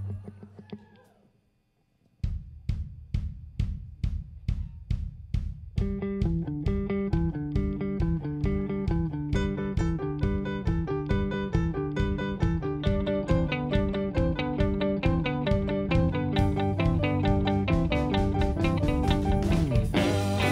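Live rock band starting a song. After a fading note and a brief pause, a steady drum beat starts about two seconds in. Bass and guitar join with a repeating riff around six seconds, and cymbals come in near the end.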